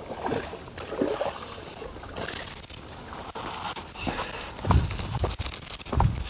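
Water sloshing and trickling at the shore, with scattered clicks and a few low knocks, as a hooked bluefish is brought in from the water.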